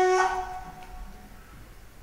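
Kaval (end-blown flute) holding a steady note that fades out about half a second in. A short, near-quiet gap between phrases follows.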